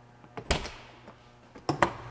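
A single thunk on the ambulance body about half a second in, with a short ring after it, then a couple of light clicks near the end.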